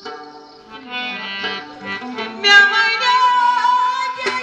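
Harmonium playing slow held notes with the drums paused. About halfway through, a woman's voice comes in over it with a long, wavering high note in the style of a Kashmiri folk song.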